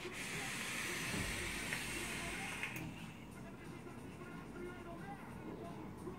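Long hissing draw on a sub-ohm e-cigarette: air rushing through the atomizer as the coil vaporises e-liquid, lasting nearly three seconds before it stops and the sound drops to a faint hiss.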